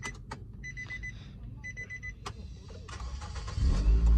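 Dashboard warning chime of a Nissan Grand Livina beeping about once a second as the ignition key clicks round, then the 1.8-litre four-cylinder engine cranking on the starter and firing near the end.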